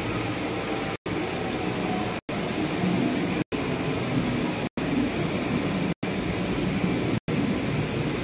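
Steady low background noise with no distinct events, cut by a brief gap of complete silence about every 1.2 seconds.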